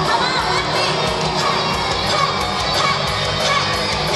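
Audience cheering and screaming over loud rock music with electric guitar and a steady beat.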